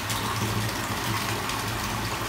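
Bathtub tap running, water pouring steadily into the tub, with a steady low hum underneath.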